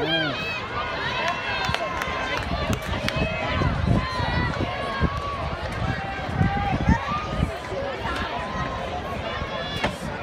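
Several people's overlapping voices calling out and chattering at once, none clear enough to make out as words, with a few sharp clicks among them.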